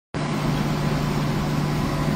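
Steady hum of idling vehicles heard from inside a car's cabin: a constant low tone under an even rush of air noise.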